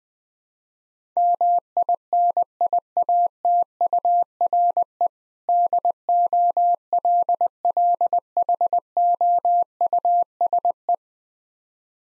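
Morse code sent at 20 words per minute: a single steady mid-pitched tone keyed on and off in dots and dashes, spelling out "miniature dollhouse". It starts about a second in, with a longer pause about halfway at the gap between the two words.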